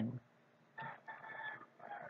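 A faint, high-pitched animal call held at a steady pitch for about a second, starting near the middle, with a weaker trailing note near the end.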